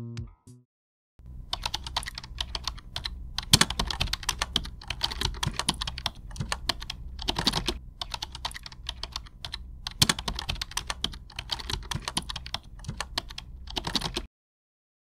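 Typing on a laptop keyboard: a quick, uneven run of key clicks with short pauses, starting about a second in after a brief silence.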